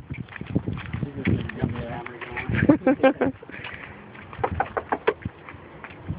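Indistinct voices outdoors, with a short pitched vocal stretch a little before halfway, over footsteps and light clicks as people walk up a concrete path to a front door.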